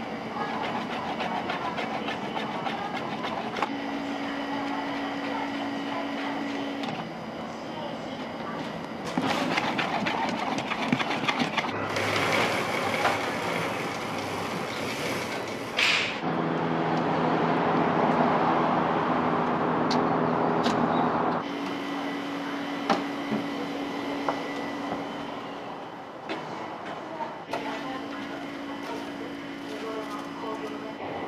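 Restaurant kitchen background noise: a steady machine hum under rushing noise with scattered clicks and clatter, the hum changing pitch and character several times.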